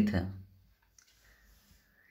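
A man's voice ends a word in the first half-second. Then come a few faint, short clicks from the input device drawing an underline on screen.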